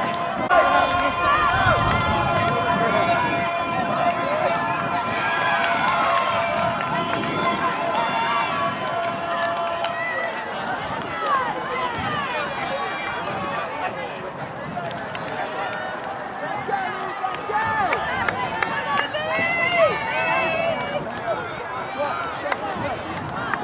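Many players' voices calling and shouting over one another across an open grass field, none of it clear as words. A steady held tone runs under the voices for about the first ten seconds, then stops.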